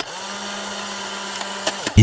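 Logo-animation sound effect: a steady buzzing hum over a hiss. It dips slightly in pitch as it starts and cuts off sharply near the end.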